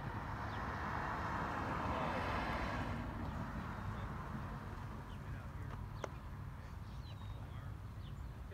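A rushing noise that swells and fades over the first three seconds over a steady low rumble, then a single sharp knock about six seconds in.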